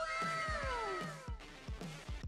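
A single drawn-out pitched sound effect that falls steadily in pitch for about a second and a half, over background music with a steady beat.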